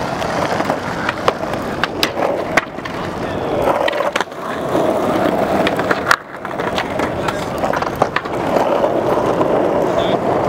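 Skateboard wheels rolling steadily over asphalt, with occasional sharp clicks. The rumble briefly drops out twice, about four and six seconds in.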